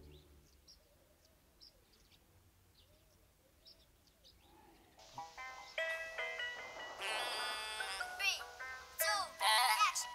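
Mobile phone ringing with a music ringtone, a melody of stepped notes starting about halfway through, with sliding notes near the end. Before it, only faint bird chirps.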